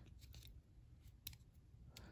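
Near silence with a few faint, small ticks from fingers handling an opened iPod Nano's LCD display and circuit board.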